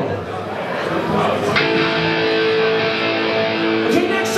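Amplified electric guitar on a live stage, ringing out held notes and chords, with one sharp hit about a second and a half in.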